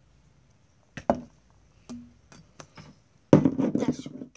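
Small glass bottle knocking against hard surfaces as it is handled and set down on a table: a sharp double knock about a second in, a few lighter taps, then a louder burst of clatter near the end.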